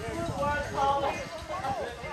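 Several people's voices talking and calling out across a volleyball court, too far off for words to be made out.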